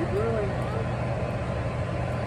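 A steady low mechanical hum, with a short rising-and-falling vocal sound just after the start.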